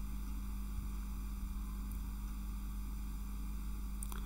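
Steady low electrical hum over a faint even hiss, unchanging throughout, with no other sounds.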